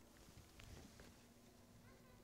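Near silence: room tone, with a faint steady hum coming in about halfway through.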